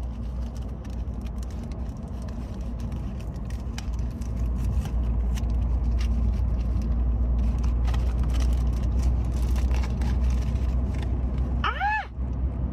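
Steady road and engine rumble inside a moving car's cabin, growing louder about four seconds in, with scattered clicks and crinkles from a cardboard-and-plastic blister pack being handled and opened. Just before the end a woman lets out a short rising exclamation.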